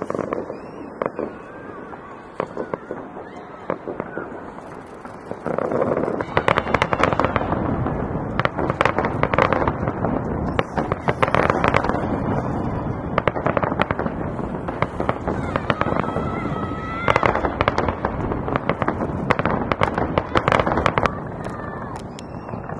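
Fireworks going off: scattered bangs at first, then from about five seconds in a loud, dense, continuous barrage of bangs and crackling.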